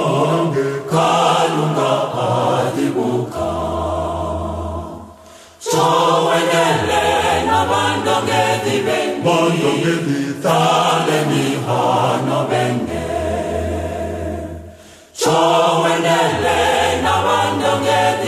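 A choir singing a gospel song in long phrases over sustained low notes, with a brief drop between phrases about five and a half seconds in and again about fifteen seconds in.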